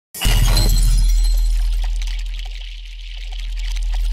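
Logo-intro sound effect: a deep, steady bass drone under a high hissing crackle. It starts suddenly, sinks in loudness about halfway through, then swells back up.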